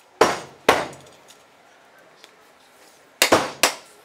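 Sharp knocks of hard objects: two about half a second apart, then a quick run of three or four near the end.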